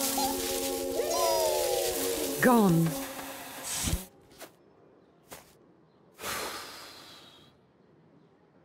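Squeaky, gliding character voices and held tones over a hiss, with a sharp falling whistle-like glide about halfway through, as in a children's animated show. This stops suddenly about four seconds in, leaving near quiet with two soft clicks and a short whoosh of noise that swells and fades about a second and a half before the end.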